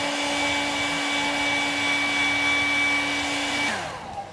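Hair dryer running steadily on high with a constant motor hum and whine, blowing hot air onto the plastic wrist holes of an action figure to soften them; it is switched off near the end and its pitch falls as it winds down.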